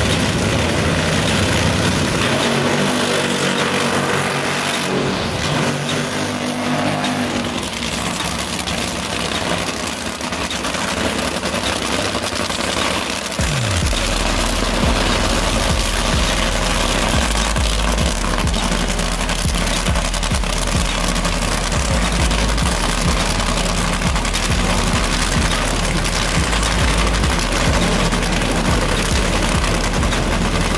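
Nitro Funny Car's supercharged V8 running loud and rough, mixed with background music. About halfway through, a falling sweep leads into a steady, low pulsing beat.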